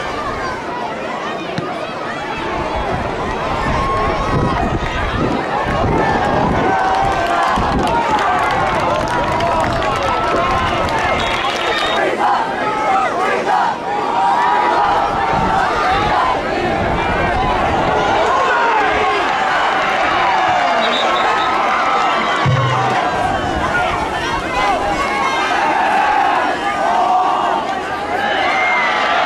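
Football stadium crowd: many voices shouting and cheering at once over one another, at a steady level. Two brief high tones cut through near the middle.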